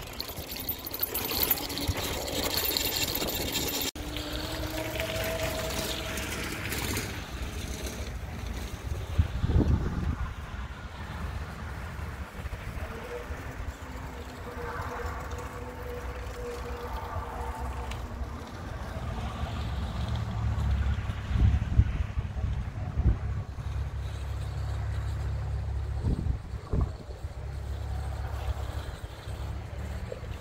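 Strong wind buffeting the microphone, a low rumble rising in loud gusts several times. Under it, a faint steady whine passes about halfway through, from the electric tricycle's hub motor.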